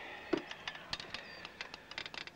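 Scattered light clicks and knocks of objects being handled at a small outdoor table, such as plastic cups, a bottle and a cassette player's buttons.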